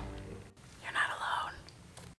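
Trailer music fading out, then a brief whispered voice about a second in.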